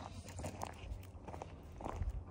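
Faint footsteps on dry, pebbly dirt ground, a few soft steps spread across the moment.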